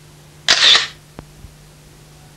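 A short, bright swish sound effect from the station's animated logo ident, about half a second in and lasting under half a second, with a few faint clicks after it over a low steady hum.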